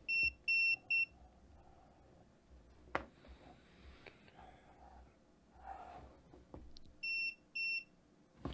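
Mustool MT11 pocket multimeter beeping in non-contact voltage mode: three short high-pitched beeps, then two more near the end. The beeps signal that it senses AC voltage from the power cord held near it. Faint handling sounds and a click fall in the gap.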